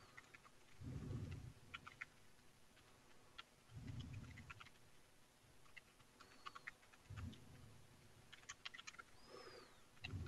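Faint computer-keyboard typing: scattered, irregular keystroke clicks, with a few soft low thuds about one, four and seven seconds in.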